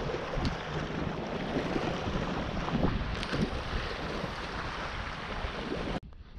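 Wind blowing on the microphone, a steady rushing noise, over small waves lapping in the shallows.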